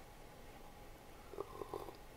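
A person sipping and swallowing coffee from a mug: a few faint, short gulps in the second half, otherwise quiet room tone.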